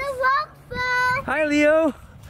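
A young child singing a few high, held notes, one after another.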